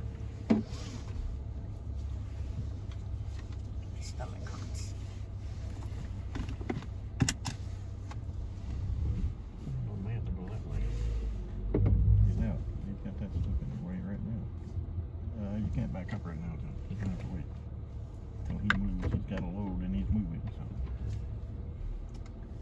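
A car's engine running, a steady low rumble heard from inside the cabin as the car slowly backs up, with a few sharp clicks and a brief louder low swell near the middle.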